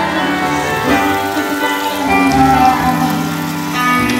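Live band playing an instrumental passage of a pop song, with electric guitar, keyboard and drums and no vocals.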